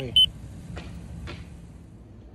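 Handheld infrared thermometer beeping twice in quick succession, two short high beeps, as it takes a temperature reading. Then a couple of faint clicks over a low steady rumble.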